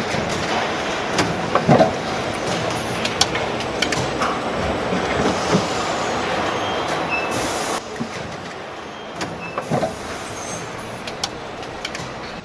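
Car assembly-line factory noise: a steady mechanical din with scattered metallic clanks and knocks, and a short hiss of compressed air about seven seconds in.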